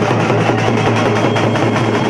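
Several large street drums beaten with sticks, a loud, dense clatter of drumming over a steady low hum.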